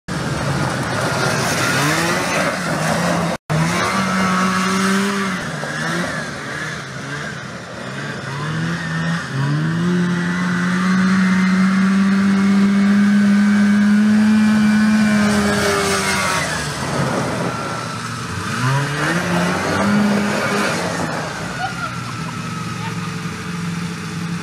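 Small six-wheeled amphibious ATV's engine running under load as it drives, its pitch rising in steps, holding steady for several seconds, then dropping and climbing again. The sound cuts out briefly about three seconds in.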